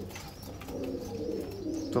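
Domestic pigeons cooing softly in the background of a pigeon loft.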